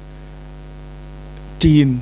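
Steady electrical mains hum in the microphone and speaker system during a pause in speech, with a man's voice coming back in near the end.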